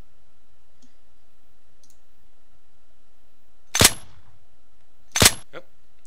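Video-game USP pistol gunshot sound effect played back, layered with a slide-release sound: two sharp shots about a second and a half apart, the first with a short fading tail.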